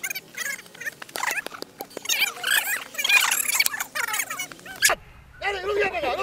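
Young people's high voices shouting and whooping in short, wavering spurts, with a single sharp knock about five seconds in.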